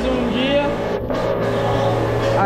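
Background music with held notes, with a voice over it.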